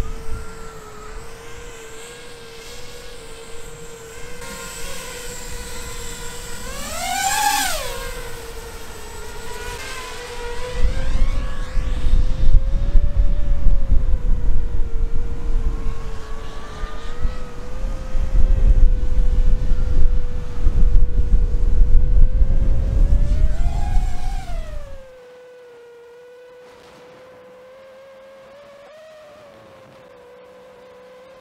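Motors of an HGLRC Sector 5 v2 FPV race quadcopter on a 4S battery whining at a steady pitch. The pitch rises sharply and falls back twice, about 7 seconds in and near 24 seconds in, as throttle is punched. Heavy wind rumble on the microphone lies under it through the middle of the stretch and cuts off suddenly about 25 seconds in, leaving the whine quieter.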